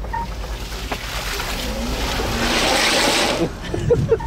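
Golf cart tyres ploughing through a mud puddle: a hiss of spraying water and mud that builds up, is loudest about three seconds in, then stops suddenly, over a steady low hum.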